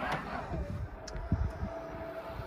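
Electric motor of an aftermarket powered boot lift on a Tesla Model 3 raising the rear boot lid: a steady whine that settles onto one pitch within the first second and holds.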